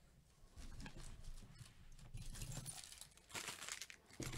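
Faint crinkling and rustling of foil trading-card pack wrappers being handled and squared up in a stack, with soft low bumps; a louder crinkle near the end.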